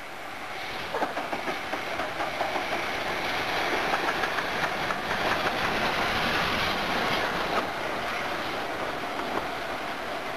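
Train passing on the main line, its wheels clicking rhythmically over rail joints, about three clicks a second. The sound builds over the first few seconds, is loudest in the middle and eases off near the end.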